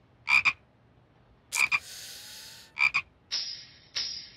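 Frogs croaking at night: three short double croaks about a second and a quarter apart, with a steady hiss between the later ones.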